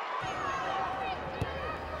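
Football match ambience: a low steady hum of the ground with faint distant shouts from players and a sparse crowd, and a single dull thud about halfway through.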